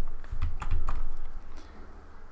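Computer keyboard keys clicking in an irregular run of taps.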